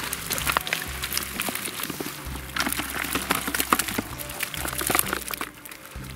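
A wet keepnet full of small live fish being lifted and tipped into a bucket: a string of irregular crackles, slaps and rustles from the fish flapping against the net mesh and each other.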